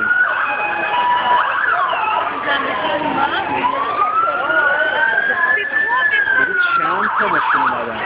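Police car siren wailing in a slow rise and fall, twice over, then switching to a fast yelp near the end, over the chatter of a crowd.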